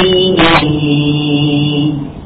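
Man reciting the Quran in a melodic chant: a short hissing consonant about half a second in, then one long held note that stops near the end.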